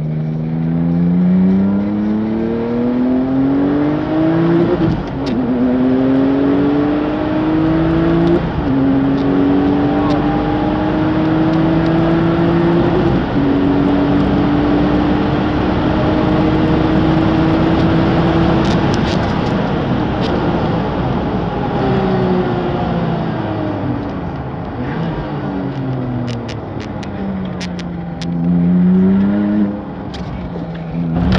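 Tuned Porsche racing engine heard from inside the cabin, accelerating hard: the pitch climbs through three quick upshifts in the first dozen seconds into a long pull, then falls as the car slows for a corner, and rises again briefly near the end.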